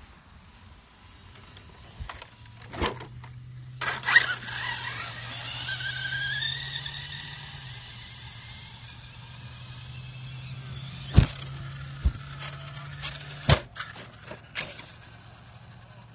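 RC monster trucks driving on dry grass: a motor whine that glides up in pitch, over a steady low hum, with several sharp knocks as a truck lands and tumbles, the loudest about 11 and 13.5 seconds in.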